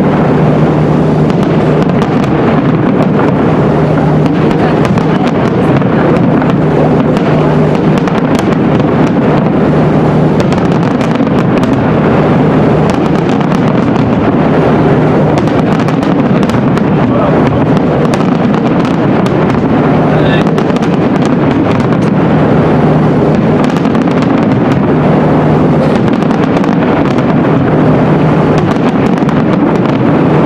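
Fireworks finale barrage: many aerial shells bursting in rapid succession, a loud, unbroken rumble of bangs and crackle with no pause.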